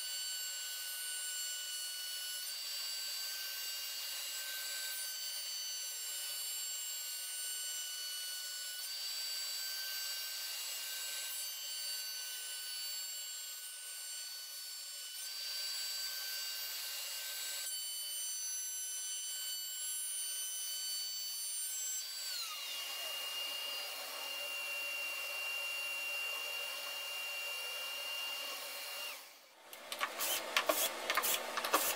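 CNC router with a 1/2" straight carbide bit spinning at 20,000 rpm, cutting an arch along a wooden table rail: a steady high-pitched whine with cutting noise. About 22 seconds in, the pitch falls as the router winds down, and a single steady tone continues until it stops just before the end.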